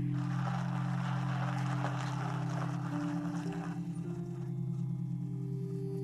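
Background music from the drama's score: low, sustained drone-like tones held throughout, with higher held notes that shift every second or two.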